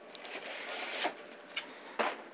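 Cardboard soda 12-pack box scraping and rustling as a cat pushes its way through it. The rustle builds for about a second to a sharp knock, followed by two light taps.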